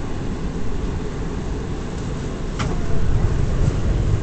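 R179 subway car running on the rails, heard from inside the car: a steady low rumble with a brief sharp high sound about two and a half seconds in, the rumble growing louder from about three seconds in.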